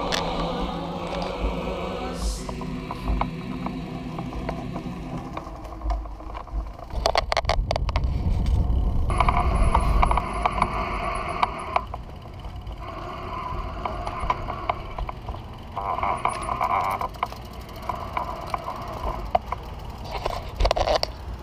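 Riding noise from a recumbent trike: wind on the microphone and rolling rumble. About seven seconds in there is a quick run of mechanical clicking from the drivetrain.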